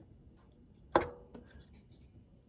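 Hands working the knobs of a Z-Match antenna tuner: faint small ticks and rubbing, with one sharp click about a second in.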